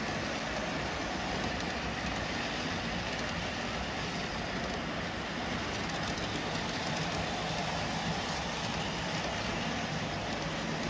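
O gauge Atlas Multi-Max auto carrier cars rolling past on three-rail track: a steady, unbroken rumble of wheels on rail.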